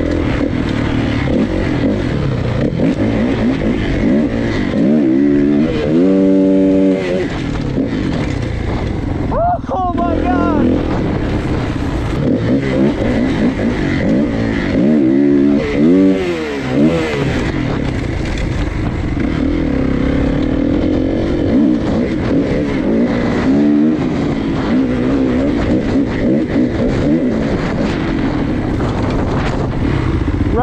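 Kawasaki 450 single-cylinder four-stroke dirt bike being ridden, its engine revving up and down through the gears, with wind noise on the onboard microphone. It holds high revs about six seconds in and climbs again around fifteen seconds.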